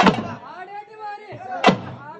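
Two loud, sharp strikes about a second and a half apart, with men's raised voices shouting between them.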